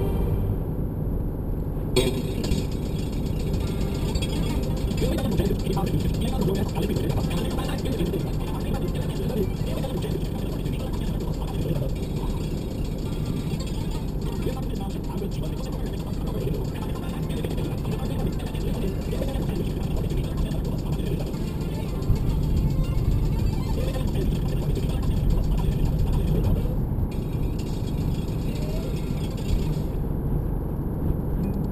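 Steady road and engine noise inside a car's cabin while it cruises at motorway speed, tyres running on the tarmac.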